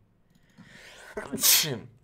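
A man sneezes once near the end, after a short rising intake of breath.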